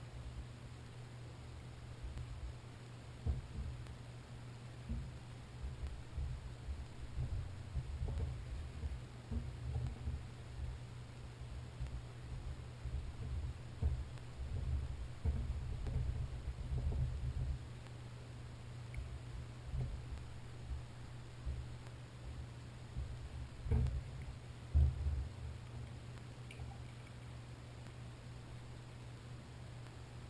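Soft handling noise of gloved hands and pliers working small VRO fuel-pump parts on a towel-covered table: irregular low bumps with a few slightly harder knocks, over a steady low hum.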